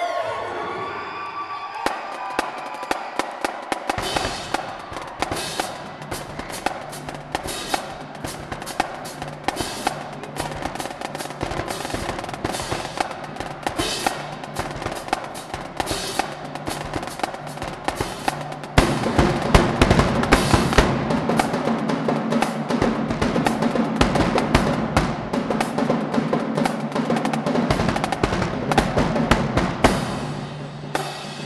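Marching drumline of snare drums, tenor drums, bass drums and crash cymbals playing a fast cadence. It gets louder and fuller in the low drums about two-thirds of the way through.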